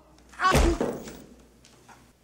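One heavy blow lands about half a second in: a single thudding impact with a brief pained cry, dying away over the next second.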